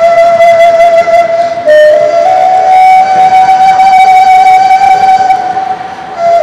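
A flute-like melody of long, steady held notes, played loud through a stage PA: one held note, a short lower note at about two seconds in, then a higher note held for about three and a half seconds.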